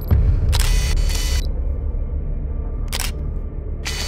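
Camera-shutter sound effects: several sharp clicks and brief clattering bursts near the start, about a second in and about three seconds in, over a steady deep bass drone.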